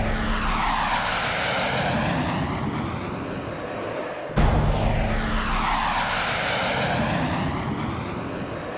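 Two jet aircraft flybys in a row, each a roar with a sweeping, phasing whoosh that dips and rises over about four seconds. The second cuts in suddenly about halfway through.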